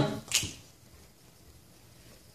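A single sharp snap about a third of a second in, as the a cappella choir's singing breaks off, then a pause of quiet room tone.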